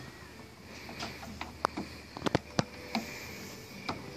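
Light, sharp clicks and taps of a new plastic door-handle trim cover being handled and seated by hand on a BMW Z3 door handle, a few scattered through the first half and a cluster of clicks around the middle.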